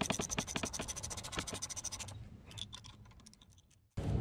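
A rapid run of sharp clicks and scratches, about a dozen a second, from the lap-bar height-adjustment bolt and bracket of an Ego Z6 zero-turn mower being worked by hand. The clicking thins out after about two seconds and fades away near the end.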